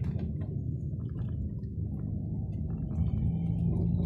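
Steady low engine and road rumble heard from inside a moving vehicle, with scattered faint light rattles.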